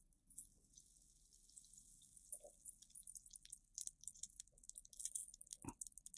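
Faint, fine crackling and sizzling of flux boiling in copper desoldering braid under a hot soldering iron tip as it wicks old solder off a circuit-board pad. A couple of soft knocks come near the end.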